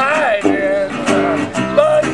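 Small acoustic jazz-blues band playing: strummed acoustic guitar under a saxophone line, with a man's voice.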